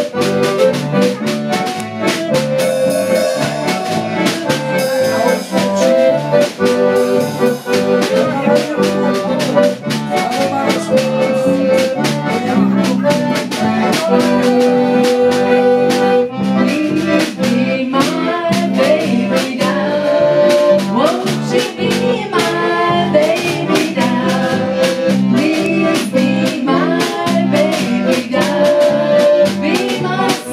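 Live polka band: a concertina carries the melody over electric bass guitar and a drum kit keeping a steady beat. In the second half a woman's voice sings along.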